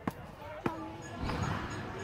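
Two sharp clicks of a metal putter striking a mini-golf ball, the second with a brief ringing tone; from just over a second in, a denser mix with low thuds takes over.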